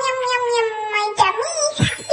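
High-pitched, cat-like cartoon voice holding one long wavering note that slides slowly down, as a cute "yummy" sound while eating. Two quick pitch-sweeping sound effects follow, the second near the end.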